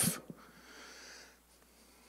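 A man's breath, drawn in close to a handheld microphone: a faint hiss lasting about a second, then near silence.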